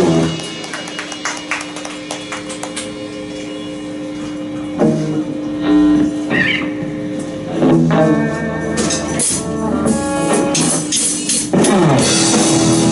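Live rock band with saxophone, electric guitars and drums in a quieter breakdown: a single held note over light, evenly spaced cymbal ticks, with a few heavier band hits from about halfway. The full band comes crashing back in loud just before the end.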